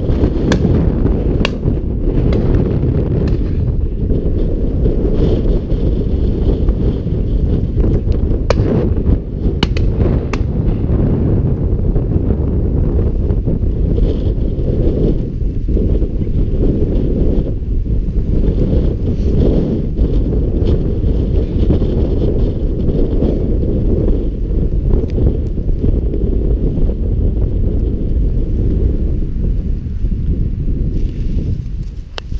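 Wind buffeting the camera's microphone: a steady low rumble, with a few faint clicks in the first ten seconds or so.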